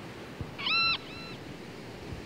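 A short, high-pitched animal cry, followed at once by a fainter, shorter second cry.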